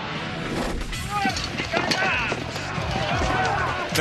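Several men yelling and shouting battle cries over background music, with a few knocks mixed in.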